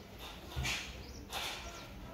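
Breathing and mouth noises from people eating bananas as fast as they can: two short noisy huffs, about two-thirds of a second and a second and a third in.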